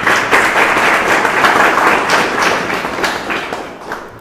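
Audience applauding: many hands clapping together. The applause starts all at once and fades away over the last second or so.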